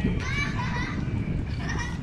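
Children's high-pitched voices calling out during play on a soccer pitch, in two short spells, one a moment after the start and one near the end, over a steady low rumble.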